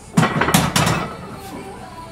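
Heavily loaded barbell racked into the steel hooks of a power rack: a quick cluster of metal clanks and plate rattle in the first second.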